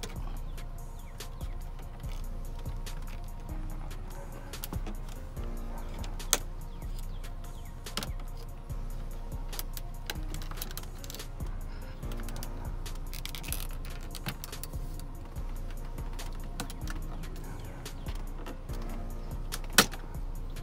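Plastic trim removal tool prying along a BMW 328i coupe's dashboard trim panel: many small clicks and scrapes, with a sharp snap about six seconds in and another near the end as the panel's clips let go. Background music throughout.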